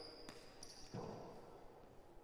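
A racquetball bounced on the hardwood court floor before a serve, faint, with the clearest bounce about a second in. Brief high squeaks come near the start.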